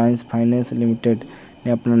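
A man speaking in Hindi, over a steady high-pitched tone that runs on behind the voice.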